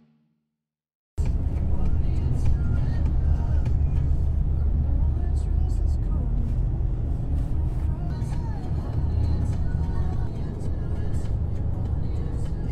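Steady low rumble of road and engine noise inside a moving car's cabin, starting about a second in after a moment of silence.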